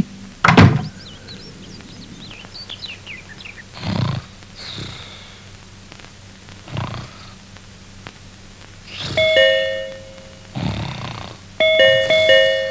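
An electronic doorbell chime rings near the end, once and then again, after a sharp thunk about half a second in and a few soft whooshing effects.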